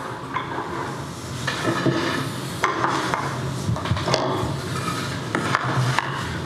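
Wooden boards being handled and set down on a bench shooting board: scattered knocks and scrapes of wood on wood.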